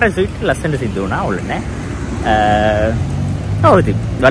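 A man talking over a low hum of road traffic. About midway a steady pitched tone sounds for about half a second.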